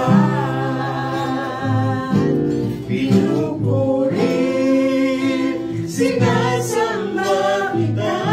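Two women and a man singing together, accompanied by an acoustic guitar.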